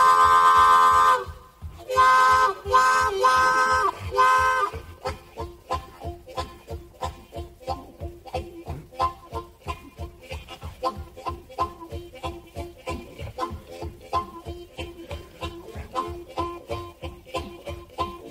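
Blues harmonica imitating a train: a long held whistle chord, then three shorter whistle blasts, then a fast, steady chugging rhythm like a locomotive running down the line.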